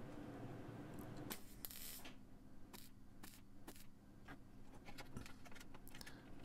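MIG welder tack-welding sheet metal: short bursts of arc crackle, the longest from about one and a half seconds in, followed by a scatter of brief clicks and crackles.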